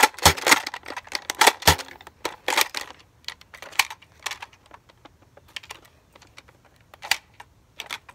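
Plastic clicks and clacks of a toy foam-dart blaster being worked by hand, a quick run of them over the first two seconds, then scattered single clicks.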